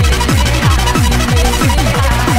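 UK hardcore dance track playing in a DJ mix: a fast, steady kick drum whose every hit drops in pitch, under dense synth sound.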